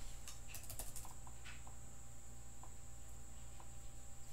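Faint computer keyboard typing: a handful of light key clicks, mostly in the first two seconds, over a steady low electrical hum.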